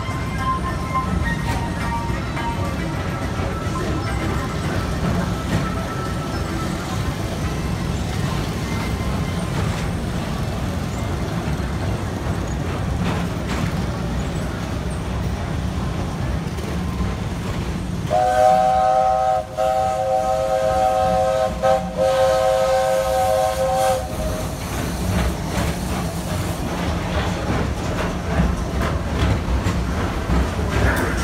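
Steady rumble of the moving PeopleMover ride car, with faint music at first. A little past halfway, a steam locomotive's chime whistle blows one chord of several notes, held about six seconds with two brief dips.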